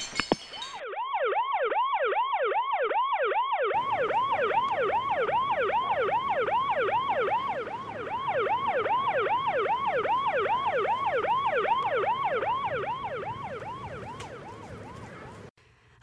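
Police car siren in fast yelp mode, a tone sweeping up and down about four times a second, fading out near the end.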